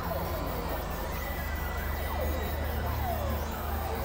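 Experimental electronic synthesizer music: a steady low drone under a noisy wash, with several thin tones sliding up and down in pitch.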